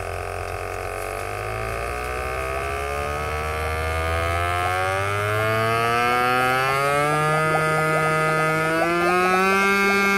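Battery-powered aquarium air pump humming as its voltage is turned up on a speed controller: the hum rises steadily in pitch, roughly an octave, and grows louder as the pump speeds up. A light crackle joins in from about seven seconds in.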